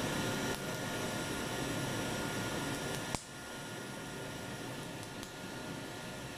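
Steady whirring hiss of a machine's fan running, with a sharp click about three seconds in, after which the sound drops a little quieter.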